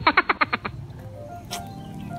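Edited-in meme sound effect: a rapid rattling train of about a dozen pulses a second that stops under a second in. A single sharp click follows about a second and a half in.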